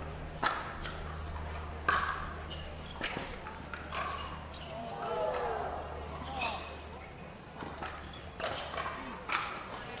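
Pickleball rally: paddles striking the hard plastic ball, a series of sharp pops about a second apart, a gap in the middle, then more hits near the end, over a low steady hum. Faint voices come through in the pause.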